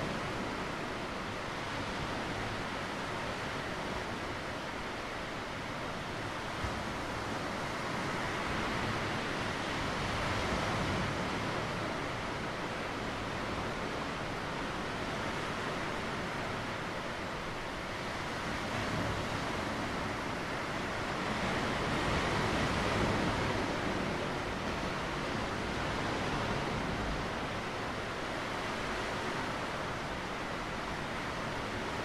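Sea waves washing onto a rocky shore: a steady rush that swells and ebbs gently every several seconds.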